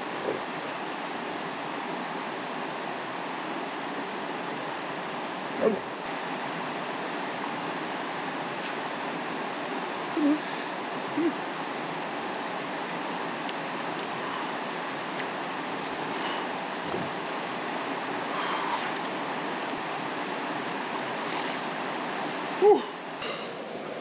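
Steady rush of flowing river water, with a few brief short sounds standing out over it.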